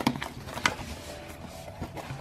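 Cardboard shipping box being opened by hand: faint scraping and rustling of the cardboard, with a few short clicks, the sharpest about two-thirds of a second in.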